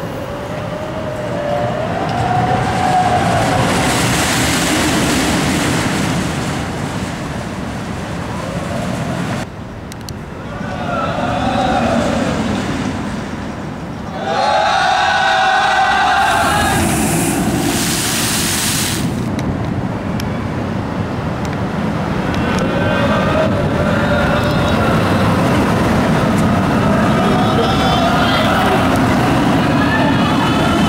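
Steel roller coaster trains running along the track, a loud rolling roar whose pitch rises and falls as each train passes, cut off abruptly twice at edits. Riders' voices come through at times.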